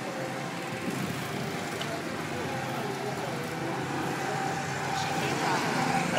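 Go-kart engines running on the track in a steady hum, growing a little louder near the end as a kart comes closer.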